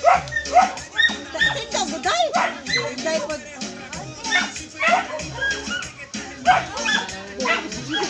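Dance music playing, with a steady low beat under short, high-pitched yelping calls that repeat about twice a second.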